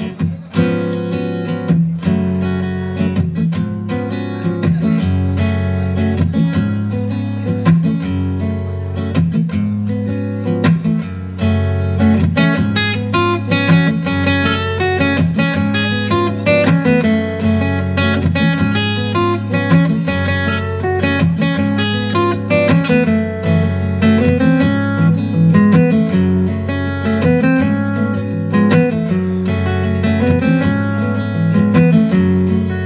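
Instrumental introduction on acoustic guitar, strummed and plucked over a steady repeating bass line, in the rhythm of a Cuban guajira.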